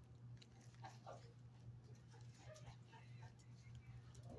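Near silence: a steady low room hum with faint, scattered clicks and rustles from a dog nosing around the floor near its bowls.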